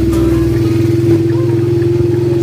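Small motorcycle engine running steadily while riding along at low speed, with a continuous even hum.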